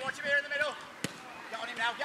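Players shouting across a small-sided football pitch, with a single sharp kick of the football about halfway through.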